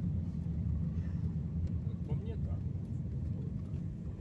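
Steady low rumble of road and engine noise inside a moving car's cabin, with faint voices in the car.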